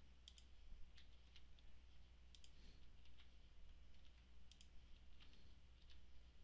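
Faint, scattered clicks of a computer keyboard and mouse as numbers are typed into table cells, some clicks in quick pairs, over a steady low hum.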